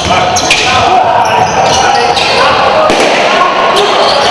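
Sound of an indoor basketball game: the ball bouncing on the hardwood court, with voices of players and spectators echoing in the hall and brief high squeaks scattered through.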